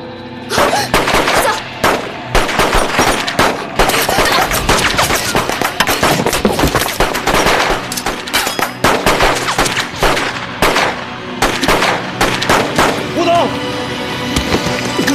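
Automatic gunfire: dense strings of rapid shots with only brief pauses, the gunfire sound effects of a battle scene.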